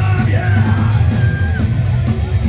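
Loud live psychobilly band: upright bass, electric guitar and drums under a yelled vocal line that slides down in pitch and is held for about a second.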